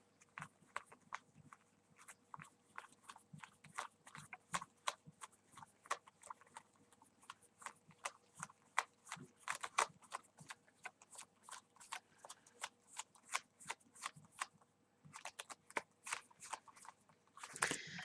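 A deck of Bicycle playing cards being spread face up from hand to hand, the card edges giving faint, irregular clicks and snaps, several a second, with a brief pause near the end.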